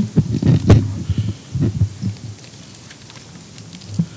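Podium microphone being handled and adjusted: a run of dull thumps and bumps through the microphone over the first couple of seconds, then quiet room tone with a single click near the end.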